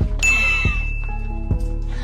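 An edited-in bell-like ding sound effect that starts sharply about a quarter second in and rings on one steady high tone for about a second and a half, over background music with a bass beat.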